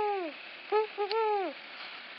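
Owl hooting as a school-bell signal: a long hoot falling in pitch, then two short hoots and another long falling hoot.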